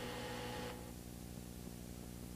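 Faint steady electrical hum and hiss from an old videotape soundtrack, with no distinct event; the hiss drops away abruptly less than a second in, leaving the low hum.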